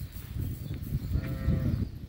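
A livestock animal's call, once and short, about halfway through, over a steady low rumble.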